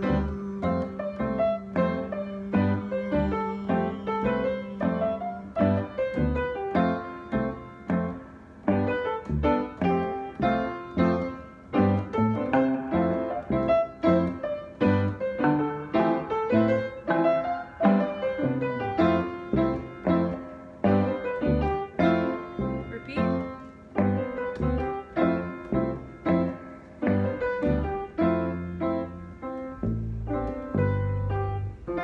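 Keyboard played in a steady run of struck chords and melody notes, a piano-like instrumental passage of an indie pop song.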